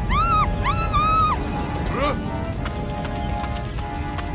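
Cartoon character screaming in a high, wailing voice: two drawn-out cries in the first second and a half, then a short rising shriek about two seconds in, over background music.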